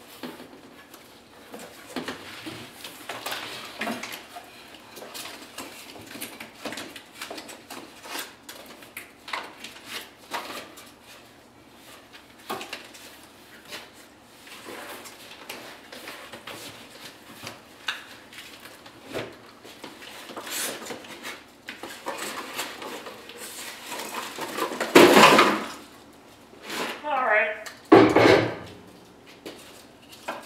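Cardboard box and packing being handled and pulled apart by hand: steady irregular rustling, scraping and small knocks. A louder scrape comes about 25 seconds in, followed by a few squeaks that slide down in pitch.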